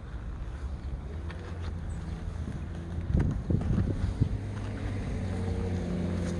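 Small car engine idling steadily, with gusts of wind buffeting the microphone about three to four seconds in.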